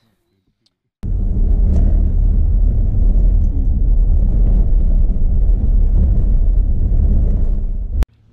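Loud, steady low rumble of a vehicle driving on a dirt road, heard from inside the cab: engine and road noise. It starts about a second in and cuts off abruptly at the end.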